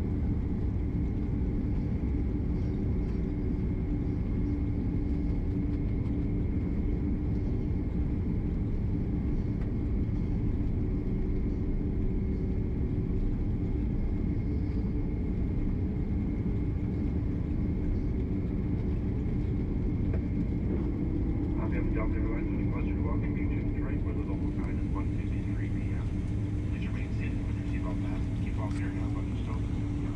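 Cabin noise inside a Boeing 767-300 airliner taxiing: a steady low rumble from the engines and airframe, with a constant hum running through it. Muffled voices join in about two-thirds of the way through.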